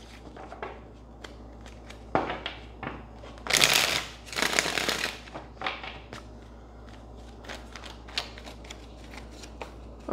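A deck of tarot cards being shuffled by hand: light card clicks and taps throughout, with a loud, dense flurry of shuffling about three and a half to five seconds in.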